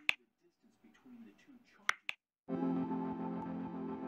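Sharp click sound effects of a subscribe-button animation: one right at the start and two in quick succession just before two seconds in. Then, about two and a half seconds in, soft intro music begins with steady held chords.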